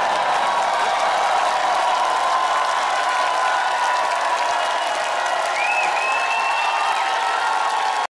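Studio audience applauding and cheering steadily at the end of a song performance, with a high whistle-like call about six seconds in.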